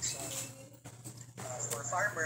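A person's voice talking indistinctly through an online call's audio, in two short stretches, over a steady low hum.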